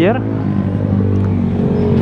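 A motorcycle engine running steadily as a bike rides past, a low even hum that fades near the end.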